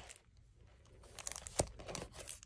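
Plastic shrink-wrap crinkling under fingers as a wrapped book is handled. It is faint at first, with scattered crackles from about halfway and one sharper tick near the end.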